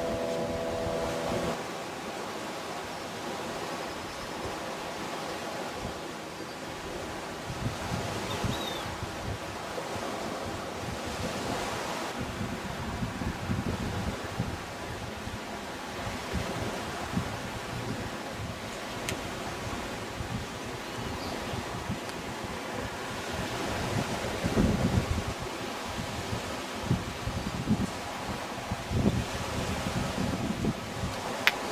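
Wind buffeting the microphone over steady outdoor noise, with heavier gusts near the end. A faint steady hum stops about a second and a half in.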